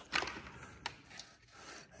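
Faint handling sounds from hands working at a small engine's flywheel and ignition coil: a short rub at the start, a sharp click a little under a second in, then a few quieter rubs and taps.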